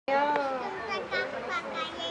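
A two-year-old girl singing in a high child's voice without backing music, holding a note at the start and then singing a few short phrases.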